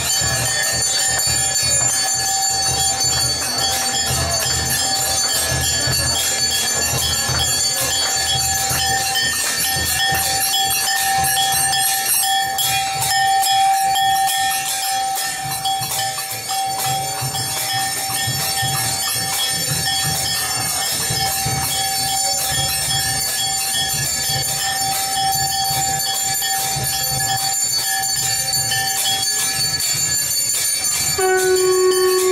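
Temple bells clanging continuously and rapidly during an aarti, with a sustained ringing tone held over a low pulsing beat.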